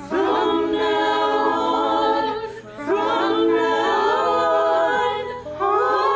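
A small women's choir singing a cappella in harmony, the voices recorded separately and mixed together. It comes in three sung phrases, each beginning together, with a short breath gap before the second and third.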